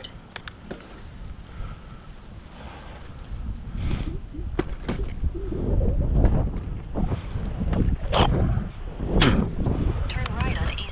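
Wind buffeting the microphone of a bicycle-mounted action camera while riding: a low rumbling that grows louder about four seconds in, with a few clicks near the start.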